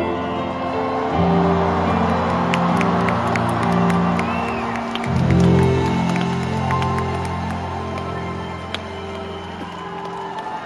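A string ensemble of violins and cello holds the slow closing chords of a ballad, the notes sustained and changing every second or two. An arena crowd cheers and applauds underneath, with a few whistles.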